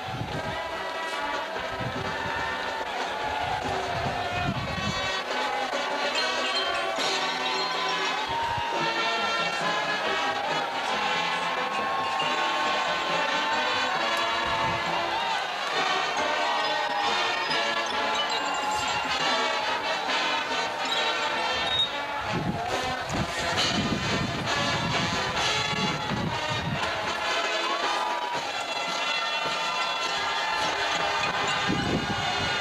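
College marching band playing on a football field: brass chords over a drumline, with stadium crowd noise underneath.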